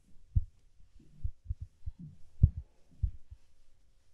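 A series of low, dull thuds, about eight in four seconds, with the loudest about two and a half seconds in.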